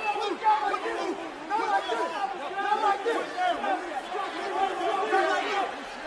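Several men's voices talking over one another in a jumble of overlapping chatter, with no one voice standing out clearly.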